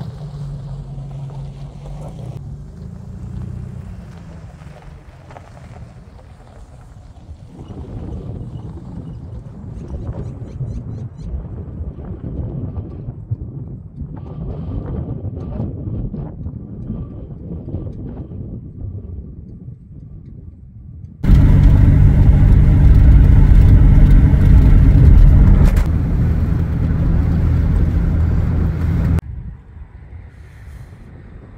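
Car engine and road noise, with a much louder stretch of driving noise that starts suddenly about two-thirds of the way in and cuts off sharply near the end.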